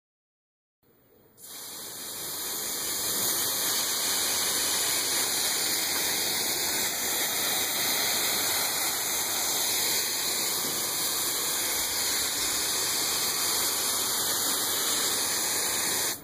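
Steady hiss of water spraying as a fine mist from a hose nozzle, starting about a second in and holding even.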